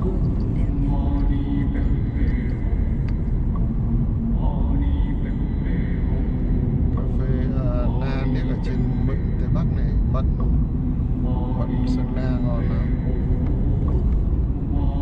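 Steady low road and engine rumble inside the cabin of a moving Mercedes-Benz car, with people talking over it now and then.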